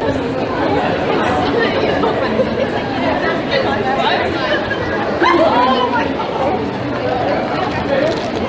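Overlapping voices of several people talking, with a louder burst of voices about five seconds in.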